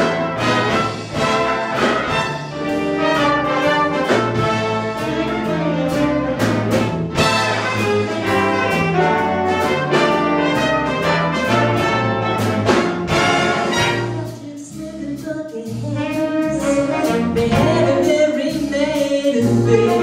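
Live big band brass section of trumpets, trombones and saxophones playing an instrumental swing passage over a steady beat, without the vocalist. The band drops quieter about fourteen seconds in, then builds back up.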